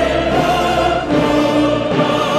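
Choral music with orchestra: a choir holding long notes with vibrato over sustained accompaniment.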